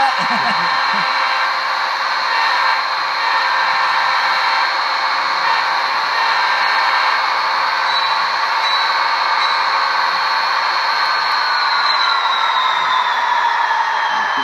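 ESU LokSound sound decoder in a model Union Pacific diesel locomotive playing diesel engine sound through its small onboard speaker: a steady engine drone with a high whine on top. From about eleven seconds in, the pitch falls steadily as the engine winds down.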